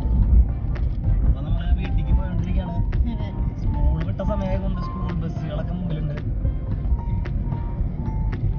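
Steady low rumble of a moving car heard inside the cabin, with music and talking over it.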